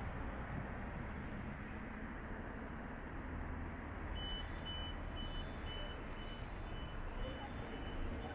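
Pedestrian crossing signal beeping, a short high beep about twice a second, starting about four seconds in as the light changes for walkers, over a steady hum of city traffic. Birds chirp near the end.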